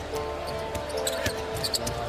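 A basketball dribbled on a hardwood court, with short knocks over the steady murmur of an arena crowd. Arena music plays underneath with a few held notes.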